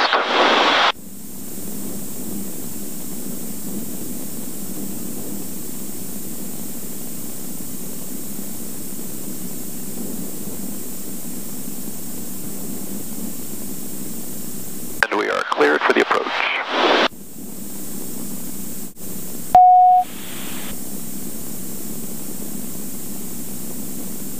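Steady hiss of a light aircraft's cockpit intercom audio with cabin noise behind it. About fifteen seconds in there is a brief burst of radio-like voice, and a few seconds later a single short beep.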